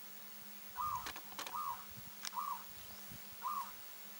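A dove calling: four short, clear notes about 0.8 s apart, each rising then falling in pitch. A few sharp clicks fall between the first three notes.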